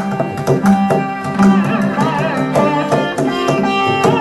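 Carnatic music: a chitraveena played with a slide, its notes gliding, with violin accompaniment over a steady run of mridangam drum strokes.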